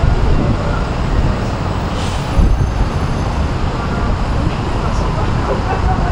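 Loud, steady city traffic noise with wind buffeting the microphone, heaviest in the low rumble, and a brief hiss about two seconds in.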